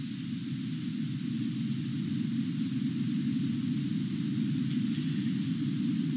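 Steady hiss of background noise, like static, with no other events.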